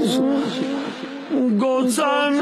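A man's unaccompanied chanted recitation over a public-address system breaks briefly. It opens with a sharp hiss, then dips in level with gliding, falling pitches, and the sung voice comes back about a second and a half in, with another sharp hiss just before the end.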